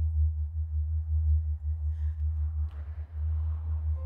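Low, unsteady rumble of wind buffeting the microphone, with a faint hiss over it.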